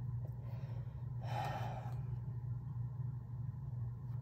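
A woman sighs once, a soft breathy exhale about a second in, over a steady low hum.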